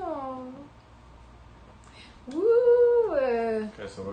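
Two drawn-out pitched vocal calls. A short falling one comes at the start, and a longer, louder one comes about two and a half seconds in; it rises, holds its pitch and then slides down.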